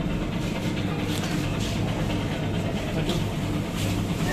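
An engine running steadily, heard as a low, even hum, with a few faint rustles over it.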